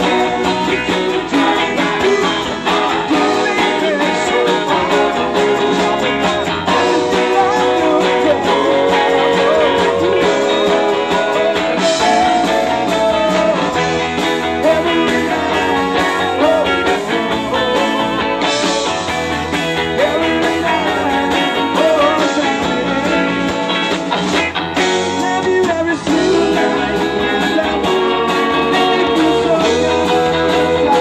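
A live rock band playing a surf-rock song: electric guitars and drums, with a man singing lead.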